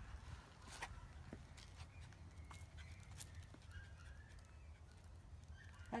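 Near-quiet outdoor background: a steady low rumble with a few faint ticks, and faint short high chirps around the middle.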